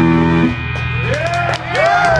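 A live rock band's final chord on electric guitar and bass, held and then cut off about half a second in; after it, a string of high whoops rising and falling in pitch begins from the crowd.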